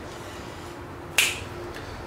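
A single sharp finger snap a little over a second in, over low room noise.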